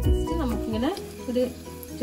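Background music that stops about a second in, leaving a steady sizzle of crumb-coated chicken bread rolls frying in oil, with a few brief voice sounds over it.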